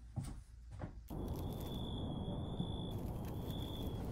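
Outdoor night ambience starting abruptly about a second in: a steady low background rumble with a thin, high steady whine held over it that drops out briefly near the end. A couple of faint clicks come before it.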